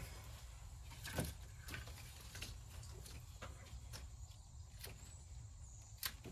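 Hand pruning shears snipping plant vines: a few faint, sharp clicks, the loudest about a second in, over a low steady rumble.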